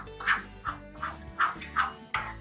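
A wooden spatula scraping and stirring jackfruit pulp cooking in ghee in a non-stick pot, about five quick strokes, over steady background music.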